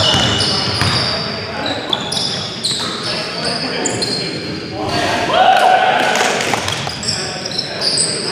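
Indoor basketball game in a gymnasium: sneakers squeak in short high chirps on the hardwood court, the ball bounces, and players call out, all echoing in the hall.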